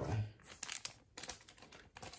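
Trading cards and their plastic sleeves being handled and set aside: light crinkling and rustling with a few scattered soft clicks.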